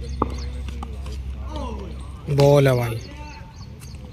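A cricket bat striking the ball with a single sharp knock, then a man's loud, drawn-out shout falling in pitch about two seconds later.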